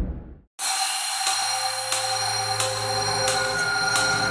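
Opening of an electronic bass-music track: a reverb tail dies away to a moment of silence about half a second in, then a harsh, buzzing noise texture with steady high whining tones over a low drone comes in, with faint hits roughly every two-thirds of a second.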